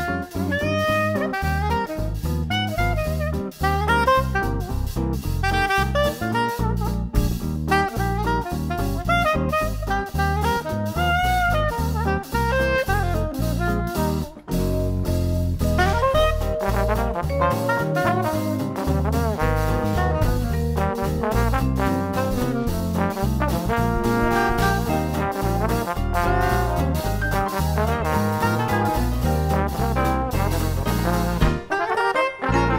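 Jazz music with saxophone and horns. About halfway through it drops out briefly and comes back as a live street jazz band playing, with saxophone, upright bass and guitar.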